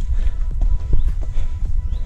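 Footsteps scrambling over limestone rock, with several sharp knocks and scrapes of boots and loose stones over a low rumble of wind and camera movement.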